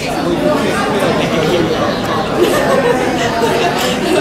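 Many people talking at once in a hall: a steady babble of overlapping conversations with no single voice standing out.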